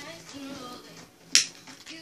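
One sharp click about a second and a half in, from a small object handled close to the microphone, over faint steady background music.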